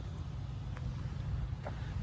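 A low, steady outdoor rumble, swelling slightly about a second and a half in.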